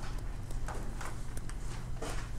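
Pen stylus tapping and scratching on a tablet screen while handwriting, a run of light irregular clicks and short scratches over a steady low hum.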